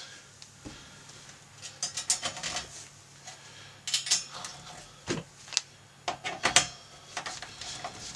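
Small screws clicking and clinking against a stamped sheet-metal cluster cover as they are set into their holes by hand. The clicks come in short scattered clusters.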